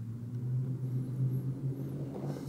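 A steady low hum with a few even tones, like an engine or motor running, that swells in and holds level.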